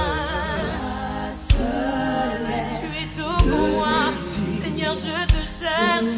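Christian worship music: sung vocals with a wavering vibrato over a band, with a deep drum hit about every two seconds.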